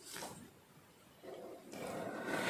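A short paper rustle, then, from a little over a second in, a chisel-tip marker rubbing across a paper card as the first stroke of a letter begins.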